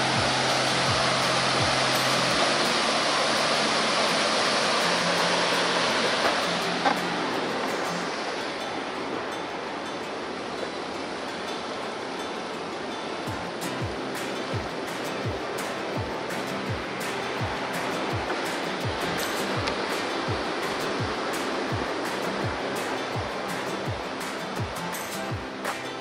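Rushing whitewater of the McCloud River, loudest for the first seven seconds or so, under background music with a steady beat of about two thumps a second.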